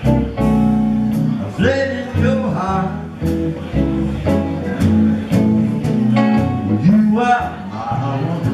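A live blues trio playing: guitar over a plucked upright double bass and a drum kit with cymbal strokes at a regular beat.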